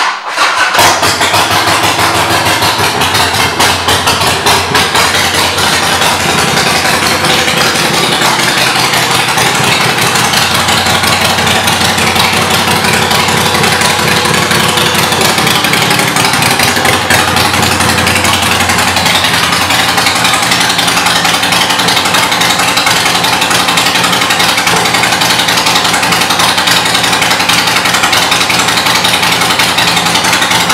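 Harley-Davidson Sportster 1200's air-cooled V-twin firing up and then idling steadily through aftermarket Vance & Hines exhaust pipes.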